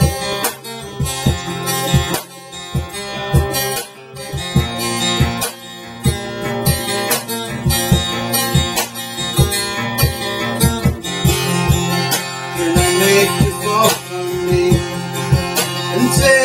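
Acoustic guitar strummed in a steady rhythm, with cajon hits marking the beat: an instrumental break in an acoustic pop song.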